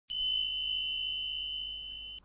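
A single high, bright ding from an intro logo sound effect, struck once and ringing on as it slowly fades.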